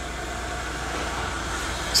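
Steady low hum with a faint even hiss, unchanging, with no distinct events: the background noise of the room.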